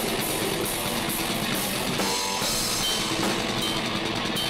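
Live rock band playing loudly: a drum kit driven hard with fast, closely packed bass drum and snare strokes and cymbals over guitars, with no break.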